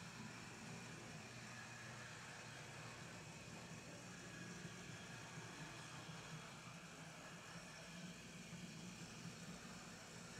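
HO-scale brass model of an RS-1 diesel switcher running along the track, its electric motor and gear drive giving a faint, steady hum; a bit noisy for a model locomotive.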